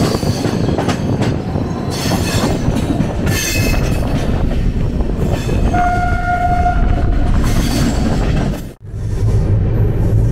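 Steady rumble and clatter of the Rajdhani Express running at speed, heard from inside the coach. A single train horn note sounds for about a second near the middle. The sound briefly cuts out near the end.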